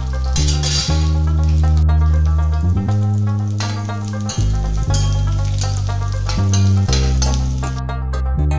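Background music with low sustained notes that change about every second, over oil sizzling in a steel pan as a ladle stirs sliced garlic and cumin seeds.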